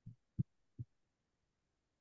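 Three soft, low thumps about 0.4 s apart, the middle one sharper and louder than the others.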